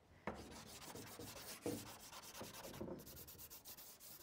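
A stick of compressed charcoal rubbed and scraped across the drawing surface in repeated strokes, making a faint, dry, scratchy sound as it lays down a dark black mark.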